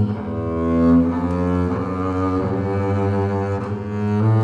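A 1945 Charles Quenoil double bass strung with synthetic strings, bowed, playing long sustained low notes that change pitch a few times.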